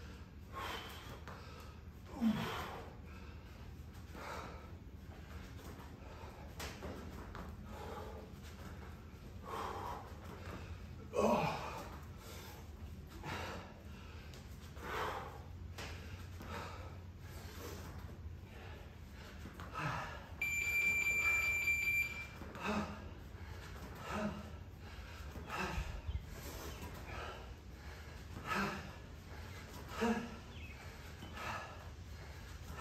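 A person breathing out sharply in a regular rhythm, a forceful breath with each kettlebell swing. About two-thirds of the way through, a steady electronic beep sounds for about a second and a half.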